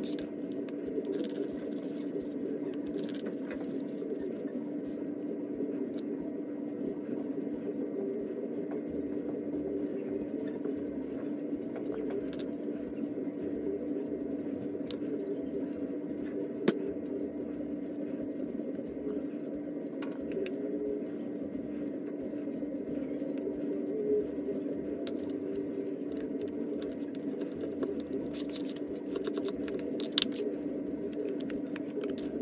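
Faint scraping and ticking of a wooden modelling tool smoothing the inside seams of a leather-hard clay slab box, with one sharp tap about halfway through, over a steady low hum.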